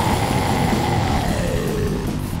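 Death metal playing: distorted guitars, bass and drums, with one held high note sliding steadily down in pitch across about two seconds.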